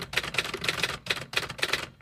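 Typewriter-style keystroke sound effect: rapid runs of sharp clicks with a few short breaks between the runs.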